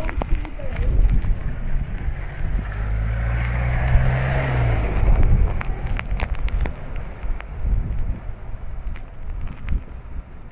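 Strong wind buffeting the microphone over heavy rain on a flooded road. About three seconds in, a vehicle passes with a low engine hum and a swelling hiss of tyres through standing water that fades out around five seconds.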